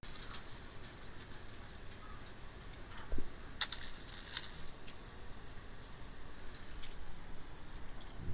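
Low hiss and scattered light ticks of a small adjustable drip-line sprayer misting water onto wood-chip mulch and leaves, with a low thump about three seconds in.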